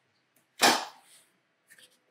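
A thin MDF underlay board laid down flat onto another board, giving one sharp slap about half a second in, followed by a few faint clicks near the end.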